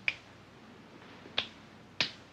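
Two sharp finger snaps, a little over a second apart, keeping a slow beat.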